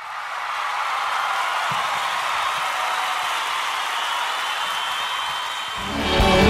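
Live concert audience applauding and cheering, a steady wash of clapping; near the end the band starts playing, led by electric guitar.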